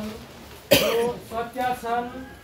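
A single sharp cough about two-thirds of a second in, followed by speech.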